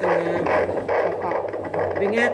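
Handheld fetal Doppler's loudspeaker giving the pulsing whoosh of a fetal heartbeat picked up through the mother's belly. The unit reads about 149 beats a minute, within the normal fetal range.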